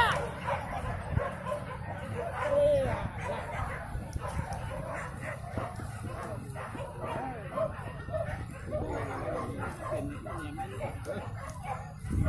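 Hunting dogs barking and yelping, several calls overlapping, mixed with people's voices.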